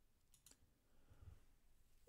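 Near silence with a few faint computer mouse clicks close together about half a second in.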